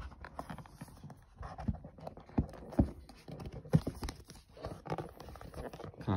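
Hands handling a cardboard retail box: irregular light knocks and taps with faint rubbing. The sharpest come in the middle, less than a second apart.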